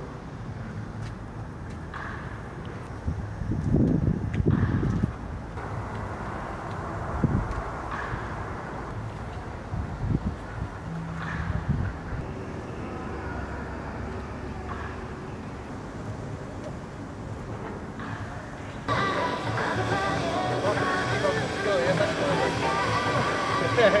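Baseball bat hitting balls in a netted indoor batting cage: a few scattered sharp cracks over low background noise. Near the end, voices and outdoor ballpark noise take over.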